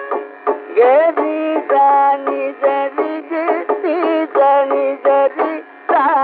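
Carnatic classical concert music from an old radio recording: a melodic line of short, ornamented notes that slide between pitches, over a steady drone.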